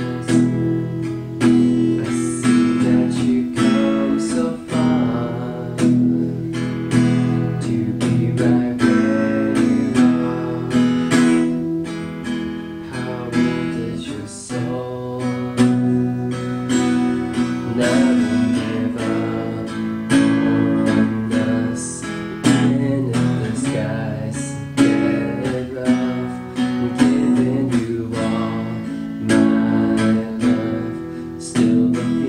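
White Gretsch acoustic guitar played in a steady rhythm of picked and strummed chords, an instrumental passage of the song.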